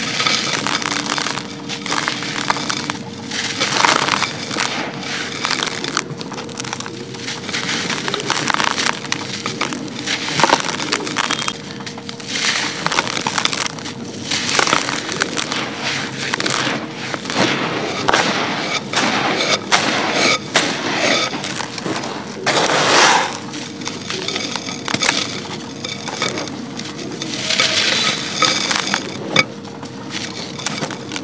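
Dry sand-cement bars crumbled by hand, a continuous gritty crackling as lumps break apart and the grit pours and patters into a clay pot. The crackling comes in louder flurries, strongest a little before two-thirds of the way through.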